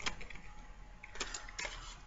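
Faint clicks and crinkles of a plastic blister pack being handled, a few short ticks about a second in and again shortly after.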